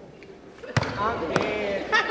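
Two sharp stomps on a gym floor about half a second apart, part of a step routine, with voices shouting in between and after them.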